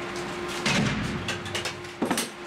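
A dull thump about two-thirds of a second in, followed by a few light knocks, over a steady low hum.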